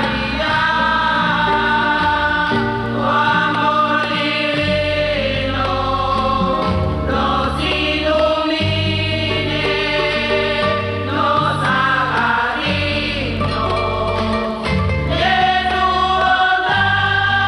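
A women's choir sings a hymn in unison with instrumental accompaniment, over held low bass notes that change every second or two.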